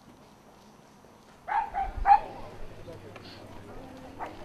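A dog barking three times in quick succession about a second and a half in.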